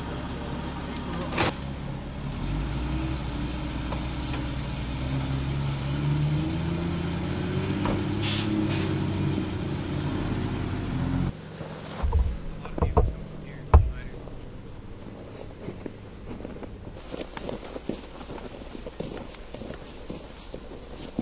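A military cargo truck's engine running, its pitch climbing steadily as it speeds up, then cut off abruptly about eleven seconds in. A few heavy thumps follow, then quieter scattered clicks and crunches.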